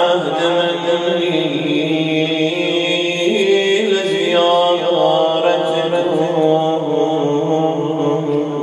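A man chanting a rawza, a Muharram mourning recitation, solo into a microphone, in long held notes that slide gently between pitches, with no instruments.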